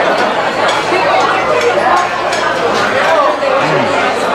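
Restaurant dining-room hubbub: many diners talking at once, with occasional clinks of dishes and cutlery.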